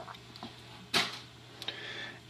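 Light handling noise from a small black LCD mounting bracket being turned over in the fingers: a few small clicks and rustles, the sharpest about a second in. A faint steady low hum sits underneath.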